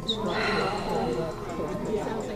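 A woman's breathy laughter, opening with a short high squeak that falls away, before she answers.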